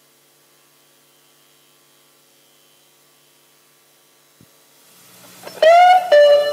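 A faint steady hum, then a click about four and a half seconds in, after which a guitar note swells in near the end and is held, bending up slightly as it starts.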